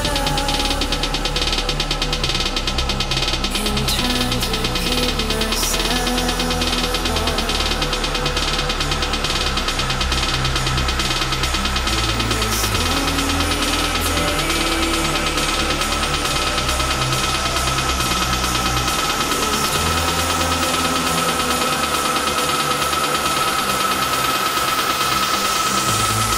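Electronic dance music played loud over a club sound system: a fast, dense beat over a stepping bass line, with a held high tone that swells in the second half. The deep bass drops out for the last few seconds.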